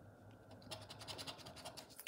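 The edge of a poker chip scratching the scratch-off coating from a paper scratchcard, faint, in quick repeated strokes that start a little under a second in.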